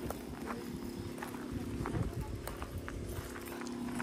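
Irregular footsteps crunching on dry grass and dirt, with a steady low hum underneath.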